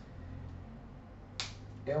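A single short, sharp click about one and a half seconds in, over a steady low hum of room tone.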